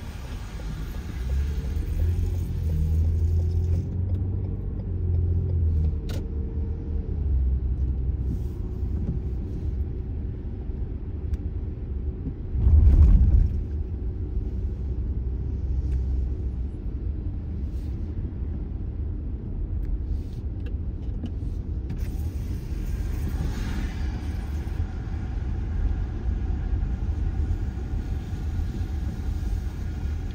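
Inside a moving car's cabin: a steady low rumble of engine and tyres on wet pavement, with a brief louder rumble about halfway through.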